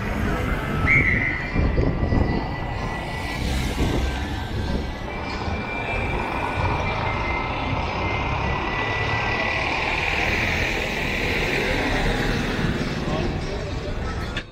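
Busy city street ambience: crowd voices over a steady rumble of traffic, with a bus running close by near the end. Thin high tones come and go, with a short high beep about a second in.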